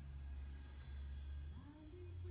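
Quiet room tone with a steady low hum, and a faint short murmur of a voice near the end.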